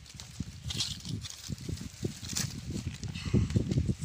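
Green coconut palm leaflets rustling and crackling as they are gripped and worked by hand, over low, irregular bumping noise that grows louder near the end.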